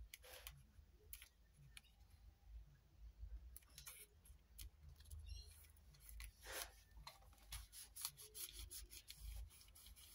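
Faint rustling and rubbing of paper being handled and pressed flat on a cutting mat, with scattered light clicks and scrapes.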